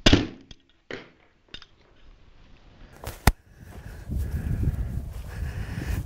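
A Kill'n Stix Micro LT carbon arrow with a Dead Meat broadhead strikes a fresh moose shoulder blade with one sharp, loud smack at the start and passes right through it. A few fainter clicks follow, then a sharp click about three seconds in. A low rumble fills the last two seconds.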